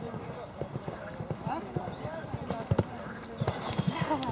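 A horse cantering on a sand arena surface, its hoofbeats growing louder in the second half as it comes close, with people's voices talking throughout.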